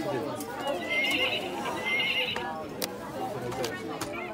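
Electronic baby activity table playing a horse whinny sound effect through its small speaker, starting about a second in and lasting just over a second, set off by a button press.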